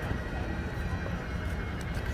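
Steady low rumble under a faint even hiss, with no voices.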